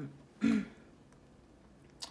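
A woman clears her throat once, briefly, about half a second in, followed by near-quiet room tone.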